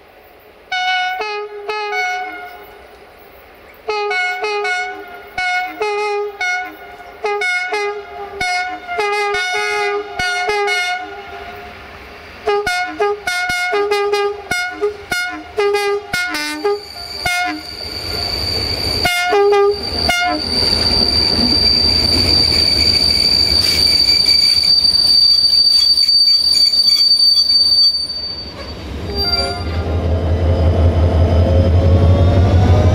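Diesel-electric locomotive (CFR Class 65, 65-1300-6) sounding its horn in a long run of short blasts at changing pitches as it approaches. From about the middle on, the train runs close by with a loud rolling noise and a steady high wheel squeal through the curve. A heavy low engine rumble comes in right at the end as the locomotive draws level.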